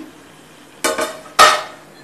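Two clanks of steel cookware, a stainless-steel pot and lid knocked together, the second louder and ringing briefly.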